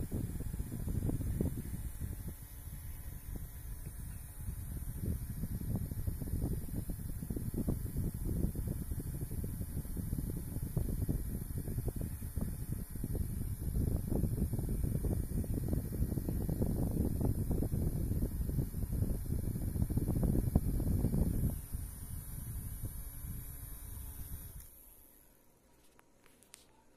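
Small battery-powered handheld misting fan running, its air stream buffeting the microphone with an uneven rumble over a faint high motor whine. The sound drops in level near the end, then stops.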